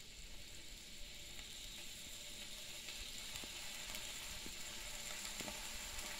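Chopped green bell pepper, onion and garlic sizzling faintly in rendered chicken fat at the bottom of a large aluminum stockpot. The sizzle is a steady hiss that grows slowly louder, with a few soft crackles.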